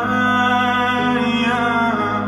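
Live band music: a male voice holding a long wordless sung note over sustained electric guitar and a low held bass note. The lower chord shifts about a second in, and the sung note bends downward near the end.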